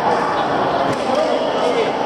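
Busy indoor sports-hall ambience: many indistinct voices echoing in the large hall, with scattered thuds and knocks from play.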